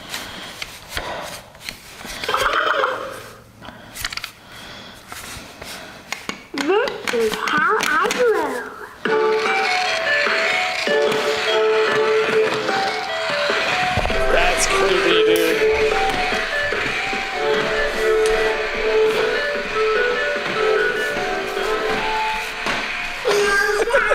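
A small electronic toy plays a tune of stepped, beeping notes. It starts abruptly about nine seconds in and runs until just before the end, after a couple of short voice-like sounds; a dull thud comes partway through.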